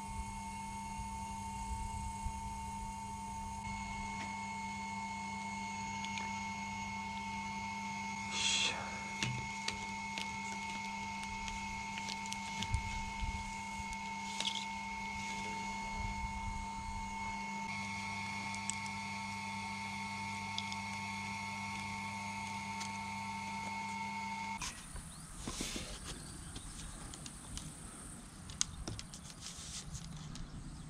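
Steady electric hum of a small motor, holding a few fixed pitches, with light clicks and rustles from handling plastic tubing. The hum cuts off suddenly about 25 seconds in.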